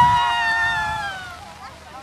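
A young woman's voice held on one long, high-pitched shout, sliding slightly down in pitch as it fades out about a second and a half in.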